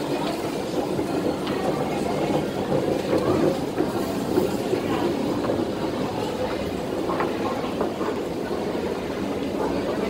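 Steady low rumble of underground station machinery with a constant low hum underneath, with faint crowd noise.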